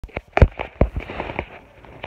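A quick run of sharp taps and pops close to the microphone, about five a second, the loudest near the start, dying away about one and a half seconds in.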